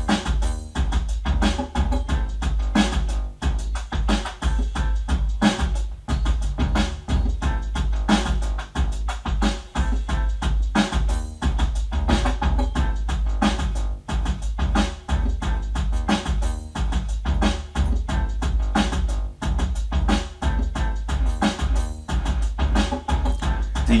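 Alesis SR-18 drum machine playing a programmed beat on its B variation, with a synth bass line sequenced from it over MIDI, running as a steady, even groove.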